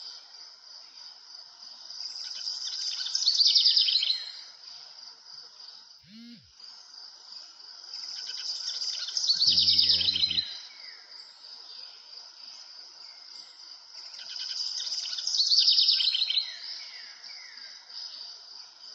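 A songbird singing the same phrase about every six seconds: each phrase swells into a loud, rapid trill and ends in a few short falling notes. Under it runs a steady, high-pitched insect-like drone.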